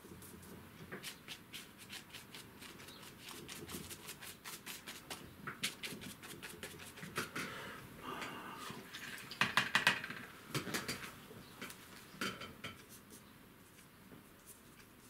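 Paintbrush dabbing and scrubbing acrylic paint on paper and a paper palette: quick, uneven taps and scratchy strokes, busiest and loudest about nine to ten seconds in.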